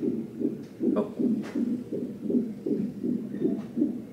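Fetal heart monitor's Doppler speaker playing the unborn baby's heartbeat as a fast, even train of pulses. It is really loud, which is put down to the baby moving.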